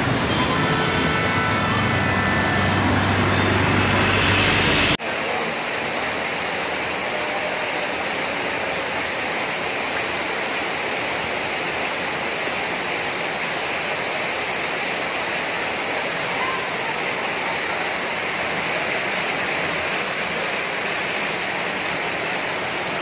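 Steady rushing water noise of heavy rain and floodwater on a waterlogged street. For the first five seconds a vehicle engine hums underneath. Then there is an abrupt cut to a steadier, even hiss of water.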